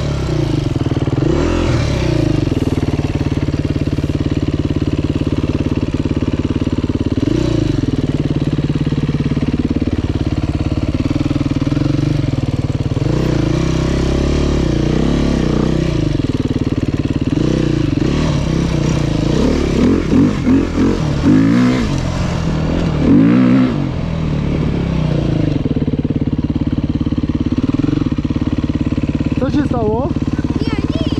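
Enduro dirt bike engine running under the rider, its revs rising and falling again and again with short bursts of throttle.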